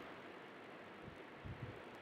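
Faint steady hiss of room tone and microphone noise, with a couple of faint low bumps about one and a half seconds in.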